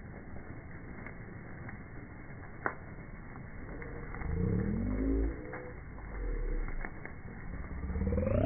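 Bonfire burning, with its sound slowed right down: scattered single crackle pops, then low, drawn-out wavering tones that fall in pitch about halfway through. A rising sweep comes near the end as the sound speeds back up.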